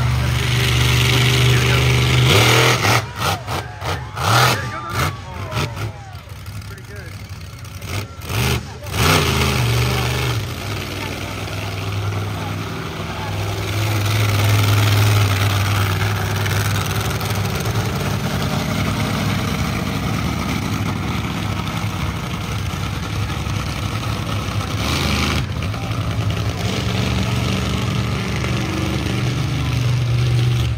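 Monster truck engine running and revving in a deep, steady drone that swells and eases. Between about three and nine seconds in there is a stretch of sharp knocks and crackle.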